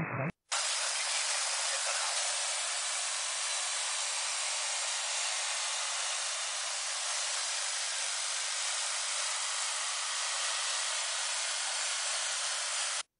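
Undecoded Digital Radio Mondiale (DRM) shortwave signal, received on a software-defined radio in DRM mode and heard as a steady, even hiss. It cuts in about half a second in, after a brief dropout.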